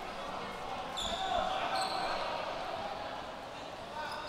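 Quiet basketball-arena ambience: a low murmur of voices and a ball bouncing on the court, with two short high squeaks about one and two seconds in.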